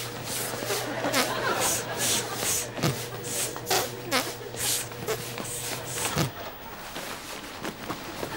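Black plastic bin bag rustling and crackling in repeated short bursts as laundry is pulled out of it, over a steady low hum that stops about six seconds in.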